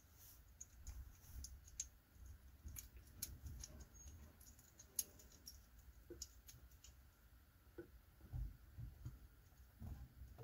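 Faint, scattered clicks and taps of small camera mounting hardware being handled and fitted together: a Canon lens riser block being set onto an Arca-Swiss plate. One sharper click comes about halfway through.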